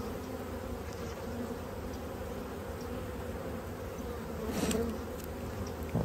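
Honeybees humming from an open, well-populated hive: a steady drone, with a brief louder swell about four and a half seconds in.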